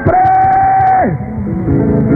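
A voice holds one long high note for about a second and then slides steeply down, over live worship music. Steady sustained chords from the band take over near the end.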